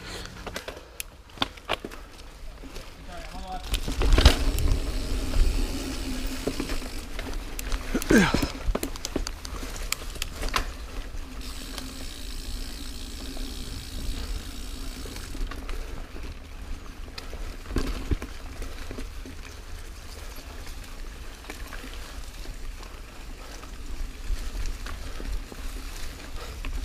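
Full-suspension mountain bike rolling over dirt singletrack: a steady rumble of tyre and trail noise with rattle from the bike and wind on the mic, broken by a few sharp knocks over bumps, the loudest about four seconds in.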